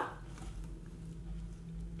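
Quiet room with a low steady hum while someone sips a drink from a mug; the sips are barely audible.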